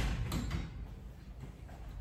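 A couple of light metallic clicks as scissors are lifted off a hanging metal utensil rail, followed by quiet room sound.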